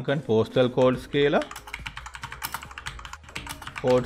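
Typing on a computer keyboard: a quick run of keystrokes starting about a second and a half in and lasting about two seconds.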